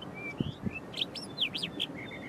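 Eastern clapper lark singing a quick, varied run of short chirps and whistled notes, mimicking other birds' calls, with steep up-and-down sweeps in the second second. Two dull low thumps sound under the first notes.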